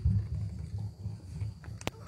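Microphone handling noise: low, irregular rumbling bumps as a stand-mounted microphone is gripped and moved, with a sharp click near the end.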